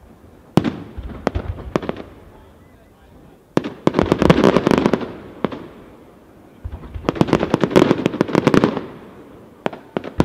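Aerial firework shells bursting: a few separate sharp bangs in the first two seconds, then two dense volleys of rapid crackling reports, starting about three and a half and about six and a half seconds in, each lasting around two seconds.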